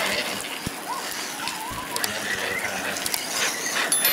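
Radio-controlled monster trucks driving on wet mud, their motors and gear drivetrains running.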